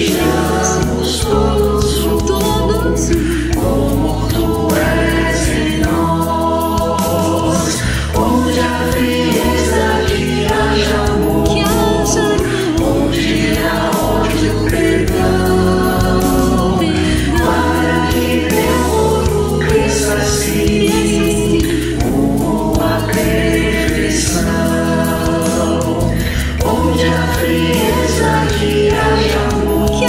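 Christian worship song sung by a mixed choir of men and women, accompanied by keyboard, acoustic guitar, bass guitar and drums, playing steadily throughout.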